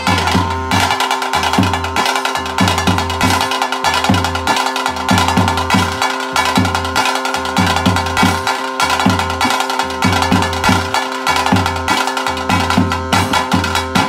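Tulu daiva kola ritual music: thase drums beating a fast, steady rhythm under a flute holding long sustained notes.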